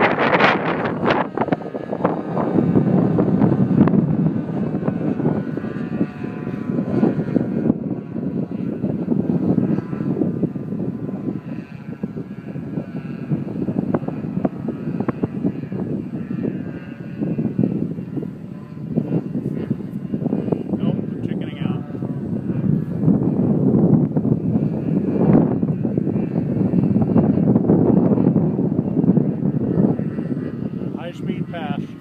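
Twin KnB .61 two-stroke glow engines of a large radio-controlled model plane running at a distance overhead, a faint wavering whine under heavy wind buffeting on the microphone.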